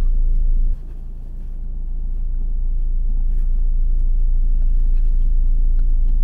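Steady low rumble inside a car cabin, which drops suddenly about a second in and slowly builds back. A few faint clicks come from the plastic suction phone mount as its angle is adjusted.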